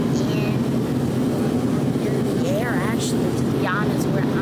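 Steady low drone of airliner cabin noise, engines and airflow, holding an even level throughout. A voice comes through briefly a couple of times in the second half.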